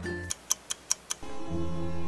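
Four quick sharp ticks about a fifth of a second apart, then background music starts a little after a second in.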